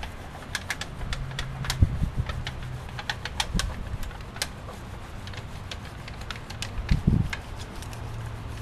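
Stainless steel leading-edge tape being pressed and worked by hand over the edge of an Ivoprop propeller blade, giving irregular sharp clicks and ticks, a few each second. A low steady hum runs underneath.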